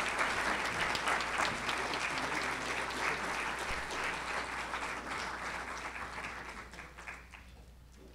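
Audience applauding steadily, the clapping fading out near the end.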